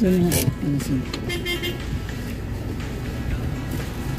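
Busy street background: a steady low vehicle engine rumble mixed with background voices and music.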